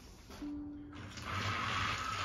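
Motorized Thomas & Friends toy engine switched on. A short steady tone sounds about half a second in, then from about a second in comes the steady whine of its small electric motor with the noise of it running on plastic track.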